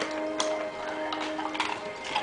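Basset hound crunching ice cubes in her mouth: a few crisp cracks and clicks spread through the moment, over steady background music.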